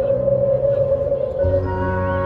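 Opening music of a marching band field show: a single eerie sustained tone, joined about one and a half seconds in by a full held low chord.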